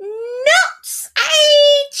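A woman's voice in an exaggerated, mocking character voice: a rising, drawn-out cry, then a long, held word, heard as "…chance".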